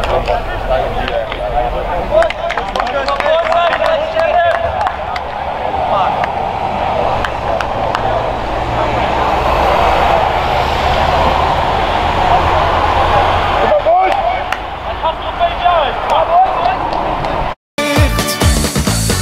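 Many indistinct voices talking and calling out at once, over a steady low rumble. The sound cuts out for a moment just before the end.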